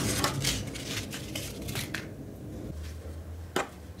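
Fingers pulling apart a wad of cotton wool close to the microphone: soft, irregular rustling that dies down after about two seconds, with one sharp click near the end.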